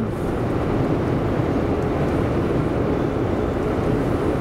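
Steady road and engine noise inside a moving car's cabin: an even low drone with a faint engine hum beneath it.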